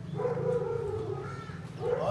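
One long, held vocal call of steady pitch lasting about a second and a half, over a steady low hum.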